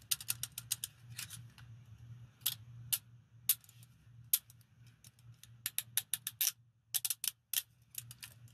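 Steel handcuffs worked in gloved hands: sharp metallic clicks from the ratchet and clinks from the metal parts. They come in a quick run at the start, then a few single clicks, another quick run around six seconds in, a brief pause, and a few more clicks near the end.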